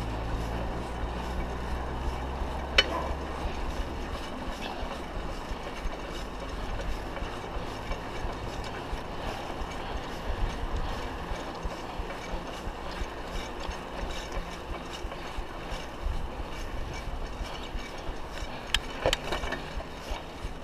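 Bicycle rolling along an asphalt road, heard from on the bike: steady wind and road noise with constant small rattles and clicks from the bike and its fittings. A low rumble fades out about four seconds in, and there is one sharp click about three seconds in.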